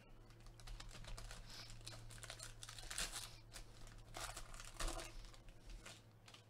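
Foil trading-card pack wrappers from 2020 Panini Spectra football crinkling and crackling in gloved hands as a pack is worked open. The sound is irregular, with a few louder bursts about three seconds in and again between four and five seconds. A steady low hum runs underneath.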